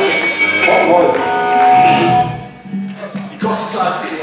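Electric guitar through a stage amplifier with sustained notes ringing and voices over it. The sound drops away a little past two seconds in, leaving a low steady hum.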